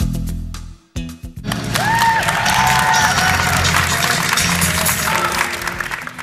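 Jazz dance music breaks off about a second in. It is followed by a group of people clapping and cheering with a few whoops, while music goes on underneath.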